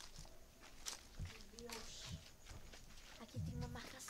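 Slow footsteps and scuffing over rough ground with clothing rustle, a few soft knocks, and brief low murmured voices near the end.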